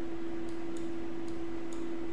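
A steady hum with faint hiss, and a few faint, scattered clicks from the mouse and keyboard as pencil strokes are drawn.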